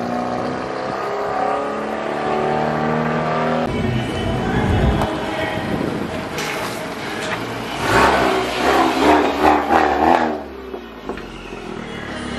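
Honda Civic Type R's turbocharged 2.0-litre four-cylinder with a PRL downpipe and front pipe, running at low speed as the car is driven. Its note rises and falls, loudest in the second half.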